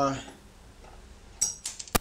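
Small steel hardware (hub bolt and washers) clinking as it is handled: a few short light metallic clicks in the second half, ending in one sharp click.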